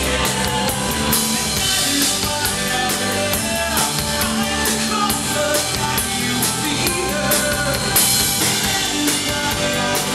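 A rock band playing live, with drum kit and bass guitar under a male singer's vocals into a handheld microphone. Cymbals crash about two seconds in, and again, loudest, about eight seconds in.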